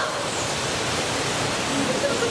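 Steady rushing noise of running water in the otter tank, even and unbroken.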